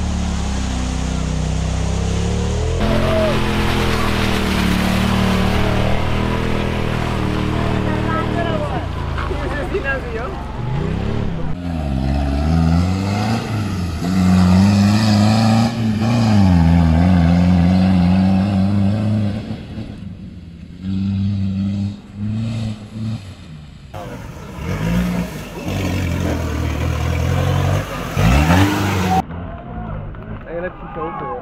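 Off-road vehicle engines working hard under load, revved up and down again and again so the pitch swoops rise and fall. In the last third the throttle comes in short on-off bursts, ending in one sharp rising rev.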